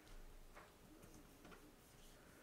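Near silence with three faint, light ticks, about half a second apart, as small squares of cardstock and patterned paper are handled and pressed together on a wooden tabletop.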